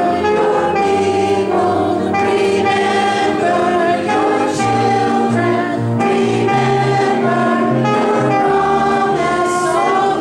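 A worship team of several men and women singing together into microphones, backed by guitar and a moving bass line.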